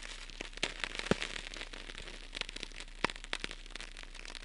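Crackling static: irregular sharp clicks and pops, a few of them louder, over a faint hiss and a steady low hum.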